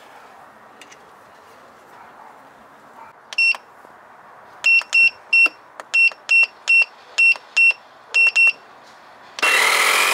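Short electronic beeps from the control panel of a CAT CJ1000DCP jump starter and air compressor as its buttons are pressed. One beep comes about three and a half seconds in, then about a dozen quick beeps follow over the next four seconds. Near the end the built-in air compressor starts and runs loudly.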